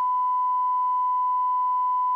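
Broadcast line-up tone: one steady electronic tone at a single unchanging pitch and level.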